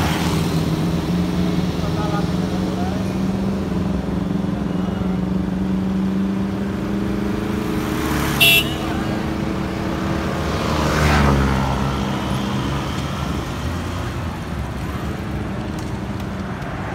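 Engines of slow-moving police vehicles running steadily, with one short, sharp toot about eight and a half seconds in and a vehicle passing close, swelling and fading, around eleven seconds.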